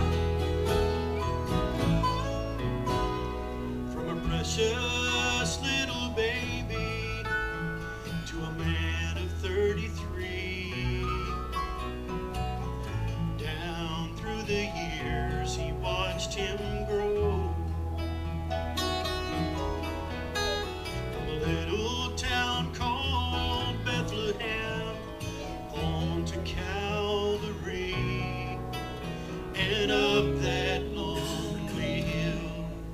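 Live gospel-country band playing an instrumental passage: acoustic guitar strumming over an electric bass line, with electric guitar and keyboard.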